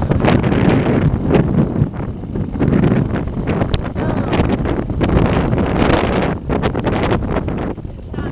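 Wind buffeting the microphone and the camera rubbing against clothing, over a Mercury outboard motor running at trolling speed.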